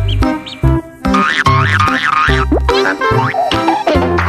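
Bouncy background music with a steady bass beat and cartoon boing sound effects: a springy wobbling tone about a second in, and quick sliding glides in pitch midway and near the end.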